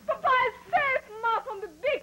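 A small child whimpering and crying in short, high sobs, each falling in pitch, about two a second.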